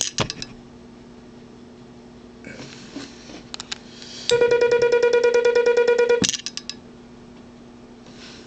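Morse sidetone keyed by a Les Logan Speed-X semi-automatic key (bug): a steady mid-pitched tone broken into a rapid string of dits for about two seconds, starting a little past halfway, as the key's pendulum vibrates. The pendulum is not damped, so the dits do not stop cleanly but trail off in several fading clicks. Fainter clicks and rustling of the key come before it.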